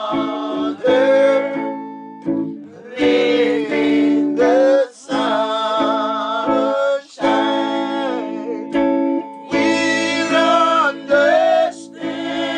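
A song: a voice singing slow phrases with long, wavering held notes, over steady sustained chords, with short breaks between phrases.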